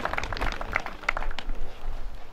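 Scattered hand-clapping from a small crowd, thinning out after about a second and a half.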